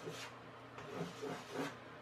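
Faint, short scratching strokes of a drawing tip on a chalkboard as small loops and lines are drawn, a few separate strokes across the two seconds.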